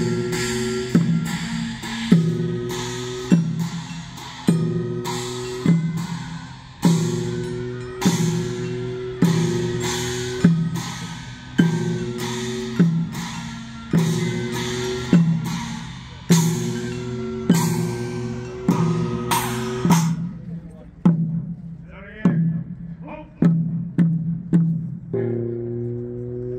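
Traditional Korean processional music with a drum beaten at a steady pace, a little slower than once a second, under held pitched tones that sound with each beat. It drops back after about twenty seconds and swells again near the end.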